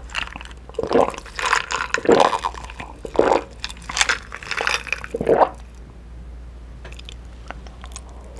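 A person drinking ice water from a glass, with about seven close-up gulps and swallows over the first five and a half seconds. After that it is quieter, with a few faint clicks.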